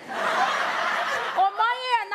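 Studio audience laughing at a punchline, a dense crowd laugh that fades about a second and a half in as a woman starts speaking again.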